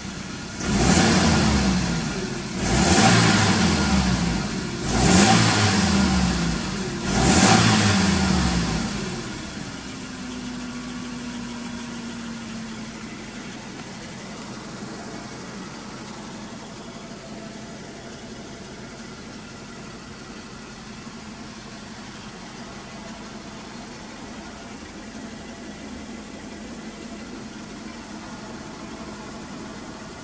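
Toyota Estima Lucida's engine revved four times in quick blips, each rising and falling back, over the first nine seconds. It then drops back and settles to a steady idle.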